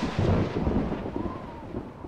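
Thunder sound effect for a production-company logo: a rolling rumble with crackle, dying away toward the end.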